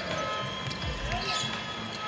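A basketball being dribbled on a hardwood court, with arena crowd noise behind it.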